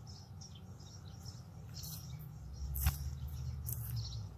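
Small birds chirping repeatedly in short calls over a low steady hum, with a single sharp click about three seconds in.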